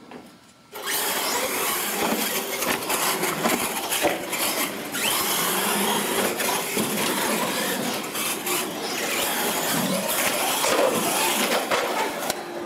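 Two electric R/C monster trucks launching about a second in and racing at full throttle, their motors and tyres making a loud, steady mechanical noise.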